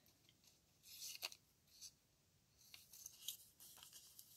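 Scissors cutting a small piece of white paper: several faint, short snips.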